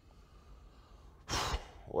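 A person's short, audible breath, lasting about half a second, comes just past the middle after a second of quiet room tone.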